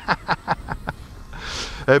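A man laughing in short quick bursts, about five a second, trailing off within the first second; a breath follows, and he starts speaking just before the end.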